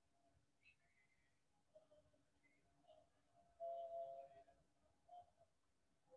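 Near silence: room tone, with a faint, brief steady tone a little past halfway.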